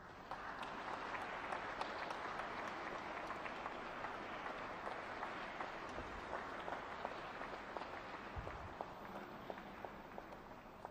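Audience applauding: many hands clapping at once. It starts suddenly, holds steady, then slowly thins toward the end.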